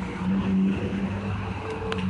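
Honda Shadow 750 Ace Deluxe's V-twin engine idling steadily, with a single light click near the end.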